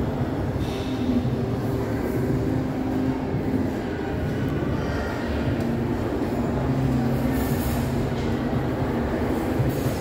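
Steady rumbling din with faint low humming tones that drift up and down in pitch.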